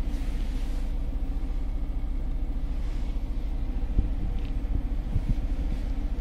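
Steady low rumble of a 2011 Maruti Suzuki Ritz petrol engine idling with the AC running, heard from inside the cabin, with the airflow of the AC blower. A single soft click about four seconds in.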